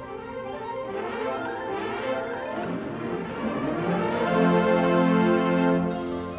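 High school marching band playing, brass to the fore: the music builds to a loud held brass chord about four seconds in, which cuts off just before the end.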